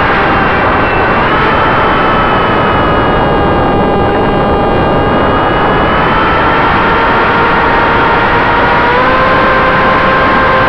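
Brushless electric motor and propeller of an RC foam plane whining in flight under loud wind rush on the onboard microphone. The whine steps up in pitch about a second in, falls back and weakens in the middle, and rises again near the end.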